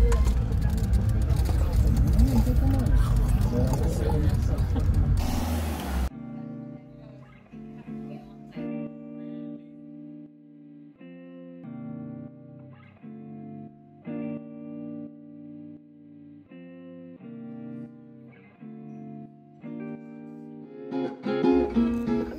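Engine and road rumble inside a moving Land Rover Defender's cabin for about six seconds, then a sudden cut to quieter background music of plucked guitar-like notes.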